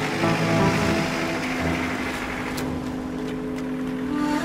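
Vintage tractor engine running at idle under sustained film-score notes; the engine sound thins out about halfway through while the held music notes carry on.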